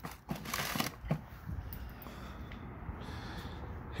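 Paper and small items rustling as they are handled in a plastic bucket, loudest about half a second in, with a few light knocks just after, then a faint steady background.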